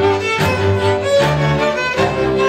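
Hungarian folk string band playing: fiddle melody over viola (brácsa) accompaniment and bowed double bass (bőgő), the bow strokes falling in a regular accented rhythm.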